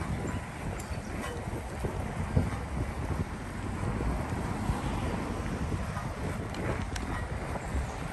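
Wind rushing over the microphone while riding a bicycle on a paved path, with scattered small knocks and rattles from the moving bike, one louder knock a couple of seconds in.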